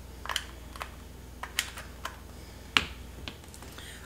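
Scattered light clicks and taps from a USB charging cable and plastic power bank being handled as the plug is pushed into the power bank, about seven small clicks, the sharpest near the end.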